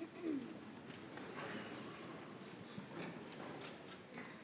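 Congregation and clergy settling into their seats: low rustling and shuffling with scattered footsteps, and a short falling squeak near the start.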